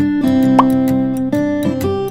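Background acoustic guitar music, with a short rising 'plop' sound effect about half a second in.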